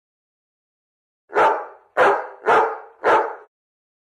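A dog barking four times in quick succession, starting about a second and a quarter in, each bark sharp at the onset and quickly fading.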